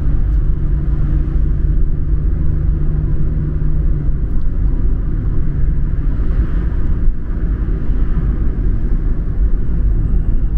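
Steady low rumble of a car driving at highway speed, heard from inside the cabin: tyre and engine noise. A low steady hum within it drops away about four seconds in.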